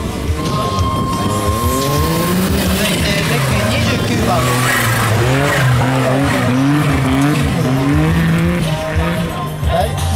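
Suzuki Jimny's small engine revving up and down as the 4x4 works its way up a muddy, rutted off-road climb, its pitch rising and falling over several seconds.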